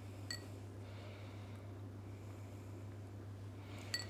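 Quiet room with a steady low hum and two faint, short clinks, one about a third of a second in and one near the end, as a small ceramic bowl of diced bacon is handled.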